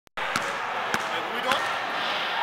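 Basketball dribbled on a hardwood gym floor: three bounces about half a second apart.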